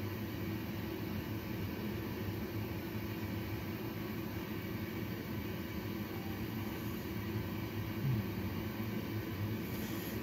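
Steady low rumble and hiss of a premature infant's CPAP breathing equipment and the bedside machines in a neonatal unit, running continuously.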